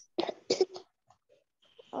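Two short bursts of a person's voice about a third of a second apart, then a pause of near silence.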